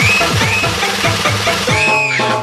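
Electronic DJ dance music with a heavy, fast bass kick, about four beats a second, each kick falling in pitch, under a high synth line that slides up. Near the end the kick drops out for a held chord.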